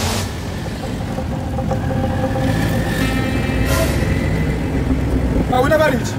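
Engine and road noise of a moving vehicle, heard from inside its cab as a steady low rumble.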